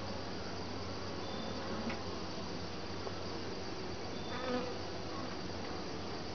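Honeybees buzzing steadily around an open top-bar hive, with a couple of small wooden knocks as the top bars are set back in place.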